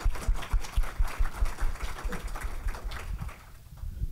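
Audience applauding, the clapping thinning out and dying away about three seconds in.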